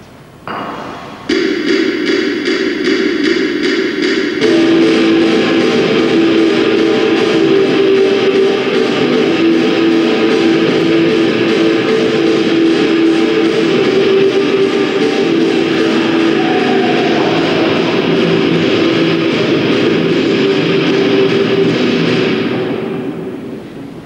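Nu-metal song with distorted electric guitars; the full band comes in about four seconds in, and the music fades out near the end.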